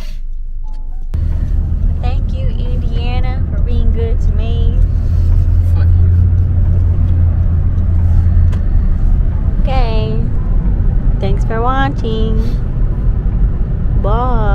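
Road and engine rumble inside a moving car's cabin, starting suddenly about a second in and staying loud, with short bits of a voice over it.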